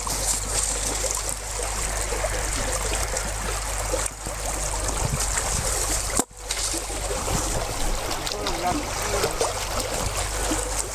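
Icy lake water sloshing and trickling around people floating at the edge of a hole in the ice, with voices over it. The sound briefly drops out about six seconds in.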